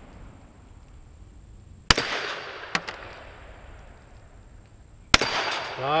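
Two pistol shots about three seconds apart, each sharp with a fading echo tail. A short, sharp knock follows the first shot by under a second.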